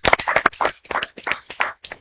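A small group of people clapping their hands in a short burst of applause, the claps coming unevenly.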